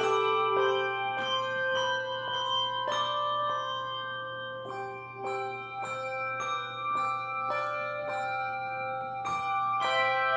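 Handbell choir ringing brass handbells: notes and chords struck about every half second, each ringing on and overlapping the next.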